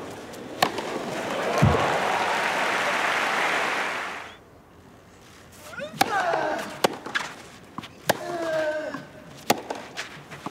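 Tennis crowd applause that cuts off about four seconds in. After a short hush, a rally begins: several sharp racket strikes on the ball, some followed by a short grunt from the player hitting.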